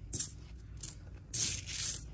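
Nickels clinking and sliding against each other as a hand spreads them across a paper towel: a few short clinks, then a longer jingle from about halfway through.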